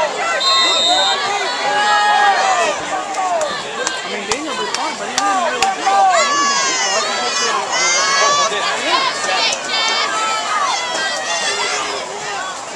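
Football crowd and sideline players shouting and cheering over one another, with shrill high-pitched yells through the middle.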